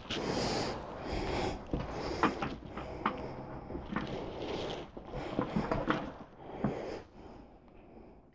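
Handling noise as a person stands up and unfolds a large knitted blanket: soft, irregular rustling of the fabric with a few light knocks.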